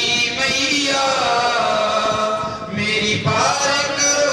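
Male voices chanting together in long held notes, a devotional chant that changes pitch a couple of times.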